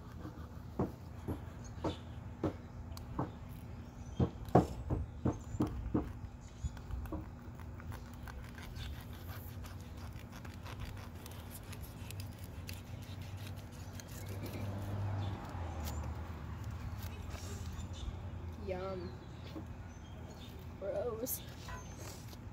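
A fillet knife clicking against a metal diamond-plate board as a fish is cut up: sharp clicks about two a second over the first seven seconds, then quieter, with a low steady hum underneath.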